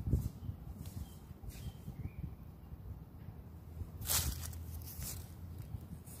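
Faint handling noise of a hand rubbing dirt off a freshly dug silver coin held close to the microphone, over a low rumble. There is a knock at the start and a short scraping rustle about four seconds in.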